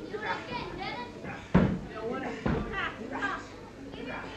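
Arena crowd, many high voices among them, shouting and calling out around a wrestling ring. Two heavy thumps from the ring come about a second and a half and two and a half seconds in, the first the loudest.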